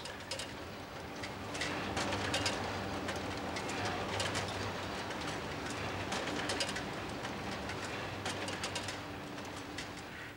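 Fabric printing machinery running: a steady low hum with irregular clicking and clattering over it, swelling up over the first second or two.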